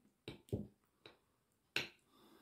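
A metal fork clicking against a plate as food is picked up: about four short, sharp clicks, the loudest near the end.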